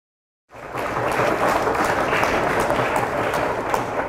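Audience applauding, starting abruptly about half a second in and holding at a steady level.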